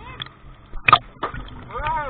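Sea water splashing and sloshing around swimmers and a camera held at the surface, with a sharp splash about a second in. A brief voice is heard near the end.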